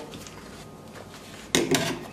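Quiet room tone, then, from about one and a half seconds in, a quick run of sharp plastic clacks and rattles as a light-switch cover plate is handled against the wall.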